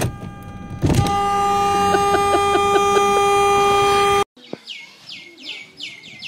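Car horn sounding in one long, steady blast of about three seconds, then cutting off abruptly.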